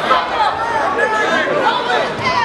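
Many voices of spectators and teammates shouting and calling out over one another, a steady loud crowd chatter.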